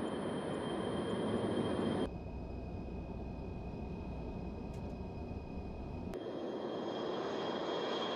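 Jet engine noise from a Y-20 four-engine turbofan military transport at takeoff power. About two seconds in, the sound cuts suddenly to the engines heard from inside the cockpit: a duller, low rumble with a steady high tone. About six seconds in, it cuts back to the outside engine noise, with a steady high whine from the turbofans.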